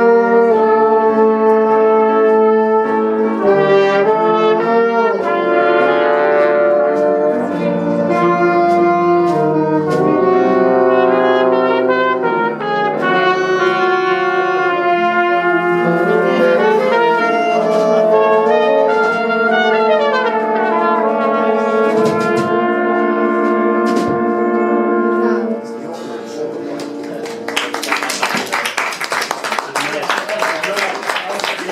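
Jazz horn section of trombone, trumpets and saxophone playing a tune together over piano and drums, closing on a long held chord about 25 seconds in. Applause follows near the end.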